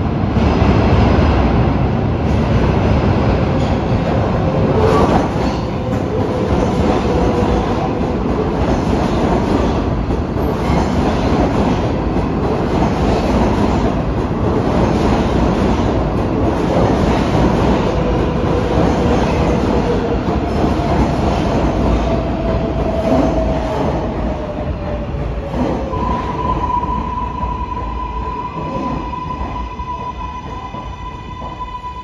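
Kawasaki R188 subway train running slowly past on the tracks, a steady rumble of wheels and motors with faint wheel squeal that glides in pitch. A steady high tone comes in near the end as the train noise fades.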